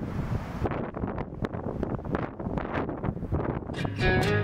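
Strong wind buffeting the microphone in uneven gusts, a heavy low rumble, with a brief hiss at the start.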